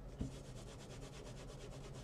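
Faint, rapid back-and-forth rubbing of an inked acrylic stamping block on a paper towel as the ink is wiped off. A light knock comes just after the start.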